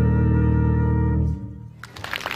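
Jazz big band holding its final chord, heavy in the low brass and bass, cut off sharply about one and a half seconds in and leaving a brief ring in the room.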